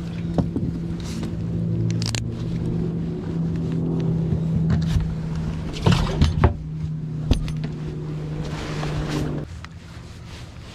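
A small electric motor on a bass boat humming steadily at a level pitch, cutting off about half a second before the end. Several sharp knocks of the livewell lid being handled come around two-thirds of the way through.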